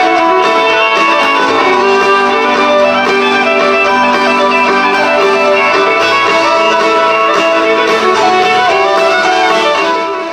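A fiddle plays the lead melody in sustained bowed lines over a live band's electric guitar accompaniment.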